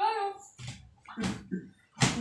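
A short spoken "haan?" and then breathy laughter: two or three short bursts of air.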